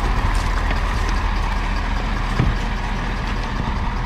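A pickup truck's engine idling steadily with a low, even hum. There is one short knock about halfway through.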